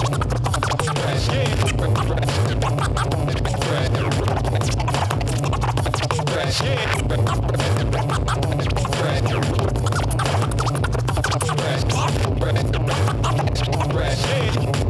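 Turntablist scratching records on two turntables over a hip hop beat, with rapid cuts and scratches going on throughout a continuous, loud mix.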